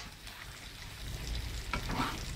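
Angled luffa and squid stir-frying in a pan, sizzling and bubbling in their sauce, with a couple of sharper clicks near the end.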